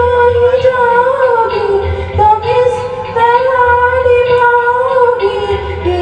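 A woman singing a melody into a microphone, amplified through a PA speaker. She holds long notes that slide between pitches.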